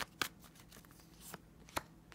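Tarot cards being shuffled by hand: a few brief, separate clicks of cards knocking together, with quiet between.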